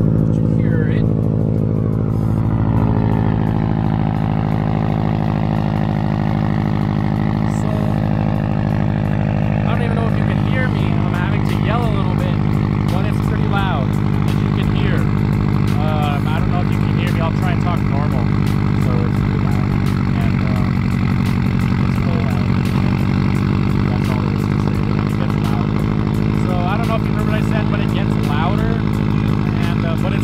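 A 2008 Subaru WRX's turbocharged 2.5-litre flat-four idling steadily just after start-up. It is heard close to the tailpipes, through an Invidia N1 cat-back exhaust and catless downpipe.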